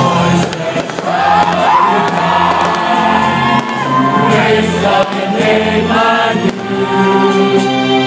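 A crowd singing a hymn together with music, choir-like and sustained, with a few sharp firework bangs breaking through.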